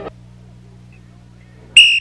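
Low steady hum, then near the end a loud, shrill whistle blast: one steady high tone that starts suddenly.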